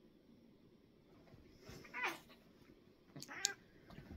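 A cat calling out twice in a fight with another cat: a short call falling in pitch about two seconds in, then another a little over three seconds in.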